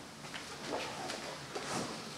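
Faint handling noises: soft rustling and a few light clicks as a gift is picked up from behind a lectern.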